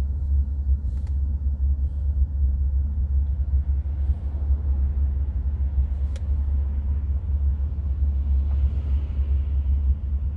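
Steady low rumble inside a car's cabin, with a faint click about six seconds in.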